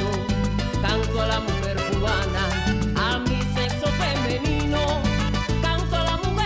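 Salsa band playing, with bass guitar, conga drums and keyboard, and a steady stepping bass line.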